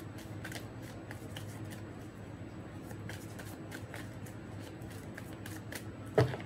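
A deck of large tarot cards shuffled by hand, the cards slipping against each other in a run of soft, irregular clicks.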